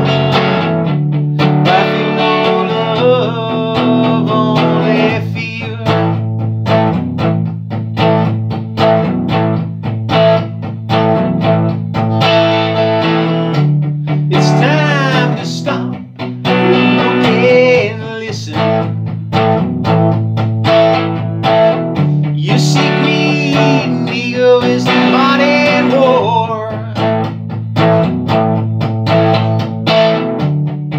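A man singing while strumming chords on a hollow-body electric guitar, a solo run through a song's chorus and verse.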